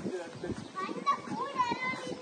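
A child's high-pitched voice calling out about a second in, over other people talking.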